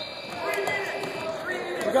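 Several indistinct voices of players and onlookers talking in a large gymnasium. A faint, high steady tone runs underneath for the first second or so.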